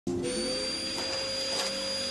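Canister vacuum cleaner running steadily, its motor giving a constant whine over a rush of air as it is pushed along a carpet runner.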